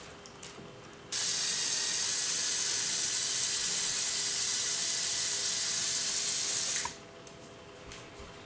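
Electric motor of a Lego Technic logging truck whirring steadily through its plastic gears as it drives the crane boom. It switches on about a second in and cuts off suddenly near the end.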